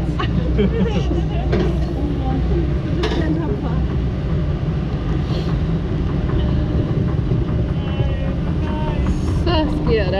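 Low rumble of a round river-rafting ride boat moving along its water channel, steady at first and becoming uneven about three seconds in, with voices talking throughout.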